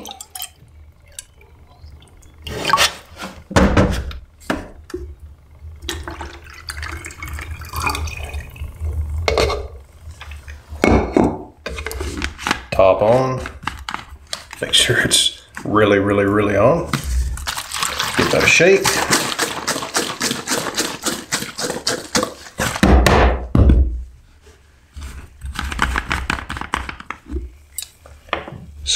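Water poured from a plastic jug into a plastic measuring cup and on into a plastic chemical bottle while mixing photographic colour developer, with knocks and clatter of the plastic containers being handled and set down. The longest pour comes about two thirds of the way through.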